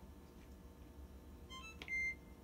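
GE Adora dishwasher control panel sounding its electronic chime near the end: a quick little run of beeps at changing pitches, a click, then a longer steady beep. It answers the Select Cycle button being held down during the reboot sequence.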